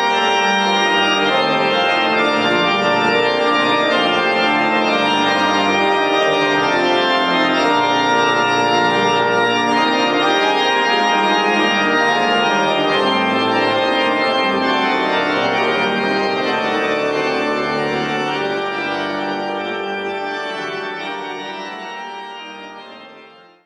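Pipe organ, the church's Willem van Leeuwen organ, playing music with several notes held together and changing, loud and steady, then fading out gradually over the last several seconds.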